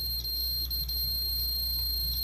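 A digital multimeter's continuity beeper sounds one steady, unbroken high-pitched tone while its probes touch two points of aluminum tape shielding, showing that the taped pieces are electrically connected.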